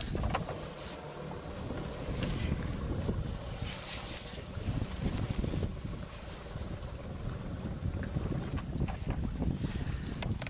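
Steady wind rumble on the microphone, with water splashing and brief knocks as a big fish is netted beside an aluminium boat and lifted aboard in a landing net.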